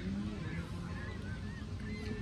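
Birds calling in the distance, a run of short, repeated bending calls over a low background rumble.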